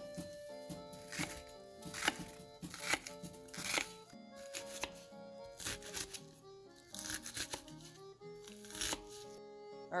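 A kitchen knife chopping an onion on a wooden cutting board, a series of sharp, irregular strikes about once a second, over background music.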